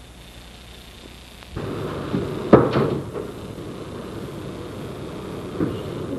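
A wooden door being opened or shut: one sharp knock of the door or latch about two and a half seconds in, followed by a few lighter clicks, over a low hiss.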